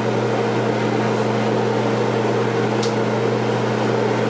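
Steady electric motor hum with an even hiss over it, unchanging throughout; a faint short tick about three seconds in.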